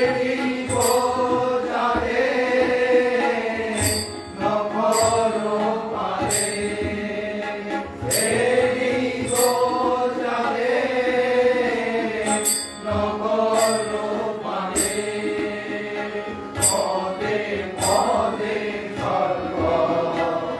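Kali kirtan: a group of voices singing a devotional chant together, with a bright metallic strike roughly once a second.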